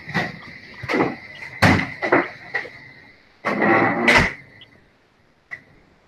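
Irregular bumps and scrapes over an open microphone, the loudest about two seconds in and again near the four-second mark, over a faint steady high tone. One small click follows near the end.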